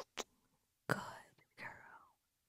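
A woman whispering a few short words.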